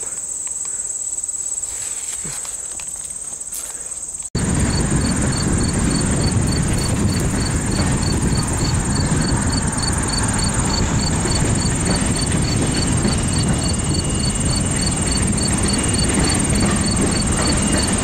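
A steady high-pitched drone of insects. After a sudden cut a few seconds in, a louder low rushing noise comes in, with one insect chirping regularly about twice a second over the drone.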